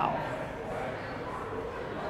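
A man's short exclamation of "wow" at the start, then quiet room tone with no other distinct sound.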